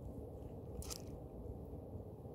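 Steady low microphone hum with one short crunchy noise about a second in.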